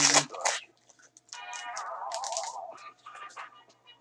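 A foil trading-card pack is torn open by hand, with short crackling tears in the last second or so. Before that comes a pitched sound about a second and a half long that slides down in pitch.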